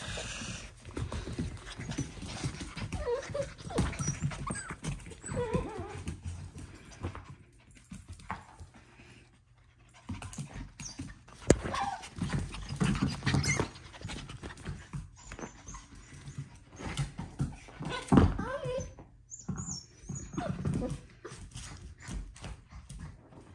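F1b goldendoodle puppy playing on a blanket and dog bed on a tile floor: irregular scuffling and puppy sounds, with two sharp knocks, one about halfway through and a second later on.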